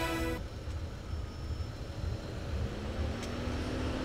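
Low, steady rumble of road traffic in the outdoor background, with a faint steady hum joining about two-thirds of the way in.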